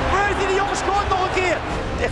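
A man's voice, a sports commentator calling a basket, over background music.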